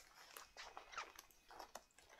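Near silence, with a few faint clicks and rustles from a leather clutch being handled, turned and opened.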